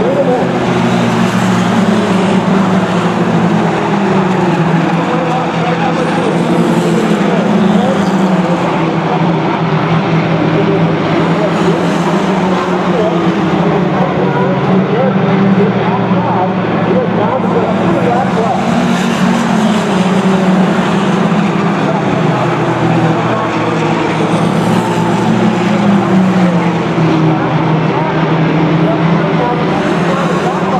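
A field of mini stock race cars, Fox-body Mustangs among them, running together on a short oval: several engines working hard at once, their pitch rising and falling over and over as the cars lap.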